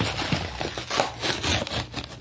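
Dense, irregular scraping and rustling close against the microphone, surging in strength.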